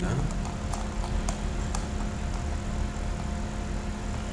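A few sharp computer-mouse clicks, about four in the first two seconds, over a steady low hum of the recording setup.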